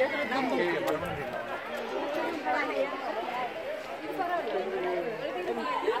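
Several people talking at once: overlapping, indistinct chatter of voices.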